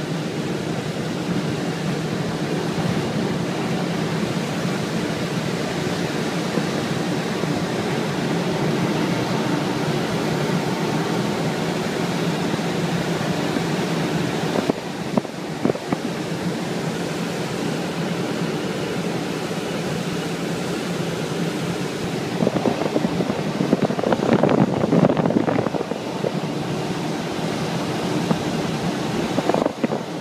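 Steady rush of air and rumble inside the cockpit of a Schweizer 2-33 glider on aerotow takeoff, with the tow plane's engine drone running ahead. The noise shifts briefly around the middle as the glider leaves the grass, and grows louder and rougher for a few seconds near the end.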